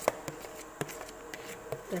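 A metal bowl knocking on a steel pot as the last corn kernels are shaken out into it: a few scattered clicks and knocks.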